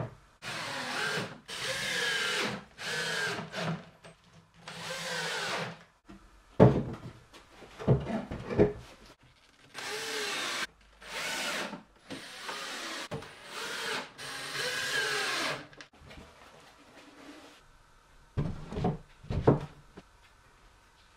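Cordless drill-driver driving screws into plywood cabinet corners in short runs of about a second each, the motor's whine gliding up and down in pitch as each screw goes in and seats. A few sharp knocks of wood being handled fall between the runs.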